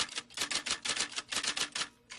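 Typewriter keys clacking in a quick run of strikes, about eight a second, a sound effect for typewritten title text.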